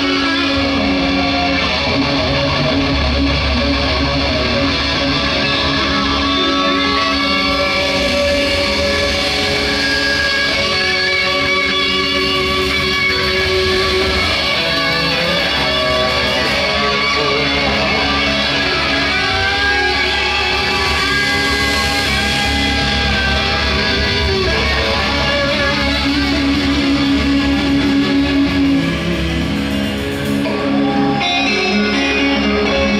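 Live rock band playing loud, with several electric guitars, bass guitar and a drum kit, in an instrumental stretch without vocals.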